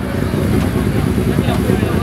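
Two Honda Civics' four-cylinder engines running while staged side by side at a drag strip start line, a steady low drone.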